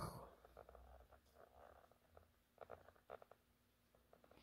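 Near silence: faint room tone with a low rumble and a few soft clicks.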